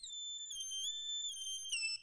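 Quiet intro music: a high, whistle-like electronic tone sliding from note to note in a short melody, cutting off abruptly at the end.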